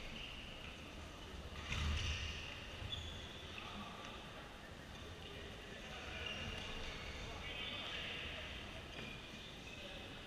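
Badminton rally in a sports hall: racket strikes on the shuttlecock, the loudest about two seconds in and another about a second later, with voices echoing around the hall.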